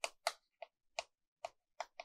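Chalk tapping on a chalkboard as characters are written: a quick, uneven run of about seven light clicks.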